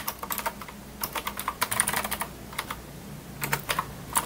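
Typing on a computer keyboard: short runs of quick key clicks with brief pauses between them.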